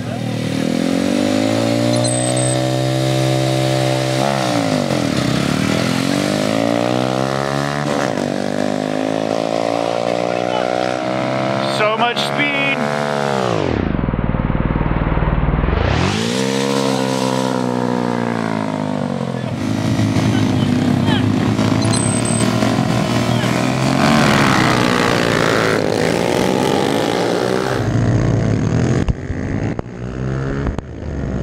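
Small mini-bike engines revving hard and accelerating in a race, the pitch climbing and falling back again and again with each gear change, with one deep swoop down and back up about halfway through.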